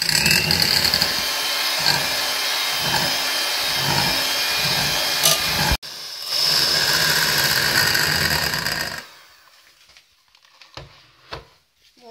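Electric hand mixer running steadily, its beaters whisking egg yolks and powdered sugar in a stainless steel pot to whip the mix until it doubles in volume. There is a brief break about six seconds in. The mixer stops a little after nine seconds, followed by a couple of faint knocks.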